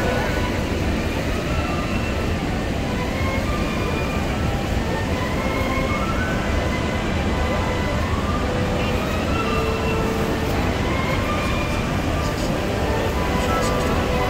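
Steady rush of the American Falls at Niagara, heard from the deck of a tour boat close under the falls, mixed with the boat's engine and passengers' voices.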